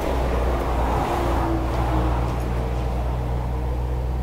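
Road traffic on an expressway below, a steady rumble of passing cars.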